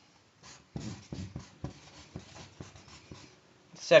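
A marker pen scratching on a sheet of cardboard in a string of short, uneven strokes, writing a word in capital letters.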